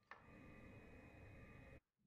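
Near silence: faint room tone, with one faint click just after the start.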